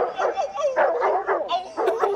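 Bullmastiff barking and yipping, a quick run of short barks.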